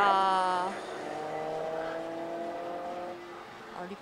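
Pachislot machine playing a racing-car engine sound effect for its on-screen car battle. The engine revs up sharply at the start and holds high briefly, then runs lower with a slowly rising pitch and fades near the end.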